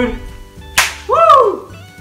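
A sharp slap of two hands meeting in a high-five about three-quarters of a second in, followed by a short, rising-then-falling whoop from a man's voice. Faint background music underneath.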